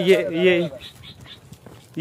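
A man's voice calling a short word twice, loud, followed by faint scattered rustles and clicks.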